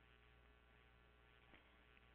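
Near silence: a faint, steady low hum in the recording's background.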